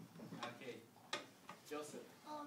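Children's quiet voices in a classroom, with two sharp clicks about half a second and a second in.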